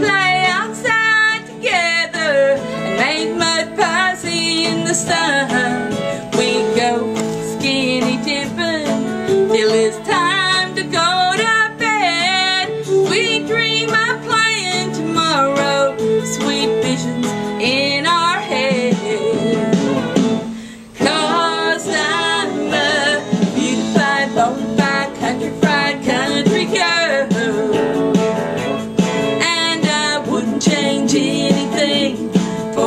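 Woman singing a country song over acoustic guitar accompaniment, with a brief break about two-thirds of the way through.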